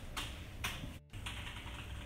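A few short rustles and clicks of papers being handled at a desk. The sound cuts out briefly about halfway through.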